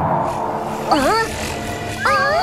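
Cartoon buzzing of a swarm of flying insects, fading out in the first half second, with a short swooping voice exclamation about a second in.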